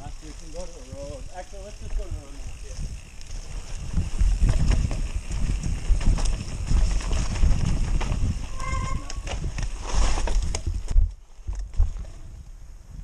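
Mountain bike ridden fast down a dirt trail, heard from a bike-mounted camera: wind buffeting the microphone, tyres running over dirt and leaves and the bike rattling over bumps, growing louder from about four seconds in. A brief brake squeal about nine seconds in, and the noise drops off suddenly shortly before the end as the bike stops.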